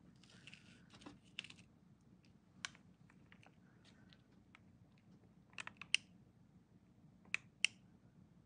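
Scattered light clicks and taps of a metal-tipped dotting tool against a small plastic mixing cup as resin is picked up, with a few quicker clicks a little before six seconds and two sharp taps near the end.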